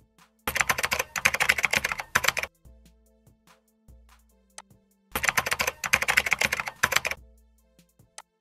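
Rapid computer-keyboard typing in two bursts of about two seconds each, over soft background music.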